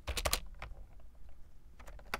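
Typing on a computer keyboard: a quick run of keystrokes just after the start, a few scattered keys, then two more keystrokes near the end.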